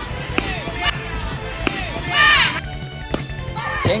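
Background music with a steady beat over sound from a baseball field. About half a second in, a sharp crack fits the bat meeting the pitch, and a few more sharp knocks follow. A voice shouts about two seconds in.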